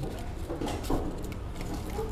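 Light crackles and taps of fried kerupuk crackers being picked up and laid onto a plate of porridge, over a steady low background hum.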